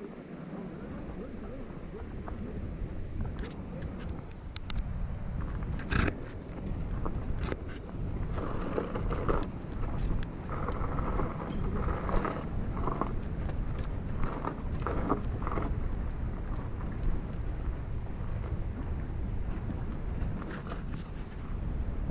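Yamaha Virago 250's small V-twin engine running at low speed as the motorcycle rides up a loose dirt road, growing louder over the first few seconds, with wind rumble on the microphone. Several sharp knocks come in the first third.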